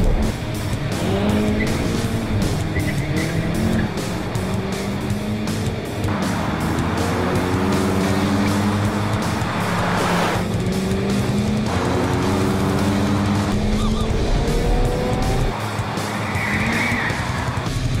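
Car engine revving hard again and again, its pitch climbing through the gears, with tyre squeal, mixed with driving action music with a steady beat. A brief rushing noise comes about ten seconds in as the car speeds past.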